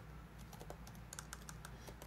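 Faint typing on a keyboard: irregular key clicks, several a second, while a search is typed in.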